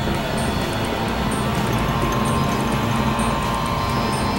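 Experimental electronic synthesizer music: a dense, noisy drone with a few steady held tones and a faint high blip repeating about once a second.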